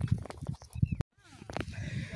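Dried maize kernels rattling and clicking as a person shifts on the grain pile, close to the microphone, mixed with low handling rumble. It cuts off abruptly about a second in, and quieter scattered sounds follow.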